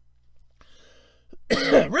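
A man coughs once, a short harsh burst about one and a half seconds in, just before he speaks again.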